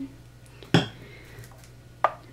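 A single sharp clink of hard objects being handled, about three quarters of a second in, with quiet handling noise around it.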